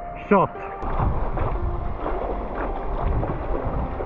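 Water sloshing and splashing around a stand-up paddleboard and its paddle as it is paddled, with some wind buffeting the microphone.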